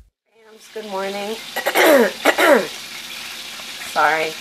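A woman's hoarse, wordless vocal sounds: a short held hum, then a few falling throat-clearing sounds, from someone who has caught a cold. Underneath is the steady sizzle of food frying in a pan.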